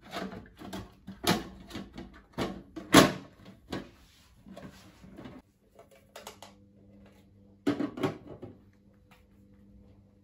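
Hard plastic parts of a Ferplast Favola hamster cage knocking and clattering as they are handled and set in place on the cage base: a series of knocks, the loudest about three seconds in, and another pair near eight seconds.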